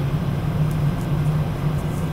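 Steady low background hum, with a few faint ticks.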